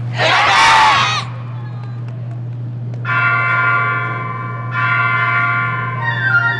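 A bell-like chime struck twice, about three seconds in and again near five seconds, each ringing on with several steady tones, as the opening of a dance's recorded music. Before it, in the first second, comes a short loud shout-like burst that bends in pitch, over a steady low hum.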